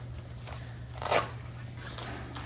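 Heavy black fabric blackout shade rustling as it is unrolled and laid across a table, with one louder swish about a second in.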